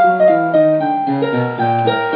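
Piano music: chords and melody notes changing every fraction of a second over a lower bass line.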